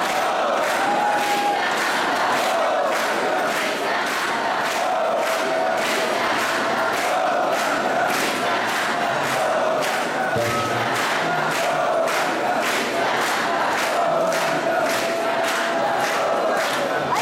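A large crowd chanting together in devotional kirtan, a held, wavering group melody, over a steady percussive beat of about two to three strikes a second.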